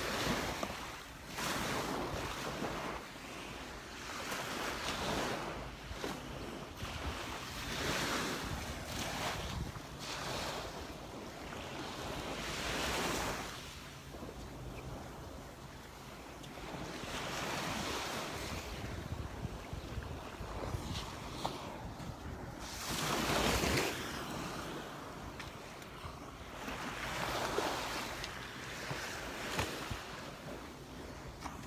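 Small Gulf of Mexico waves breaking and washing up the sand, swelling and fading every few seconds, with wind buffeting the microphone.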